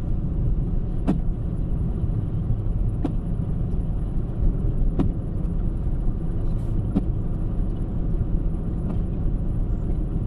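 Steady low rumble of tyre and road noise inside a car cabin at motorway speed, with a faint click about every two seconds.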